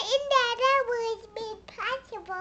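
A toddler girl's high, sing-song voice reciting words, her pitch sliding up and down between phrases.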